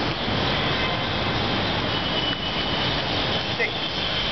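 Steady background noise with a low rumble and hiss.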